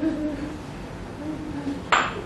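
Two low hooting tones, each well under a second long, one about the start and one past the middle, followed right at the end by a sudden sharp clatter.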